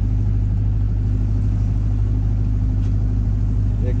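Paddle boat's engine running under way with a steady, unchanging low drone.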